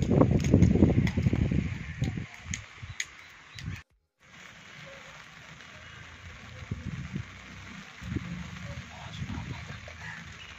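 Steady light rain: a faint, even hiss. It is preceded by a loud, low rumble across the microphone in the first two seconds, and the sound cuts out briefly about four seconds in.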